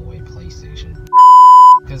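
Censor bleep: a single loud, steady 1 kHz tone about two-thirds of a second long, starting about a second in, that cuts out all other sound while it lasts, masking a word. Before it, low car-cabin rumble and music.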